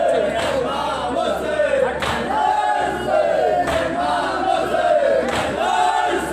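Men's voices chanting a noha together through a loudspeaker, the lead reciter's line carried by the crowd, with sharp slaps of matam (chest-beating) every second or two.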